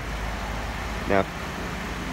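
Steady low mechanical hum with a haze of noise from machinery running in the background.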